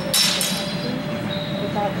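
Steel longsword blades clashing in a sparring exchange: a quick pair of sharp clanks just after the start, then a thin metallic ring that fades out over about a second and a half.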